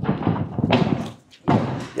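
Thuds and scuffs of a tumbler's hands and feet striking a carpeted tumbling strip as she goes through a cartwheel-type skill and lands. There are two bursts: one over the first second and a second about a second and a half in.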